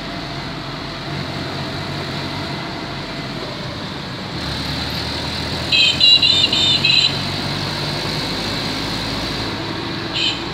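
Street traffic: motorcycle and car engines running over a steady road and wind noise. About six seconds in there is a quick run of high-pitched beeps lasting about a second, the loudest sound.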